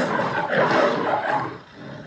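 Lion roaring, a rough, noisy growl that fades away about one and a half seconds in.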